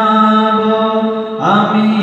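A man singing a Bangla ghazal into a microphone, holding one long note, then gliding up into the next phrase about one and a half seconds in.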